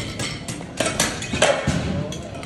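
Sharp metallic clinks and knocks of barbell equipment being handled on a powerlifting platform: several quick strikes, loudest about a second in and again shortly after.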